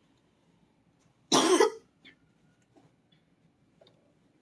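A person coughing once, a single sharp burst about a second and a half in.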